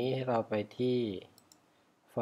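A man's voice speaking for about the first second, then two faint, sharp computer mouse clicks about a second and a half in.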